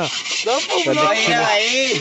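Hands scouring the inside of a large iron kadhai, a steady scratchy rubbing of grit on the metal, with voices chatting over it in the second half.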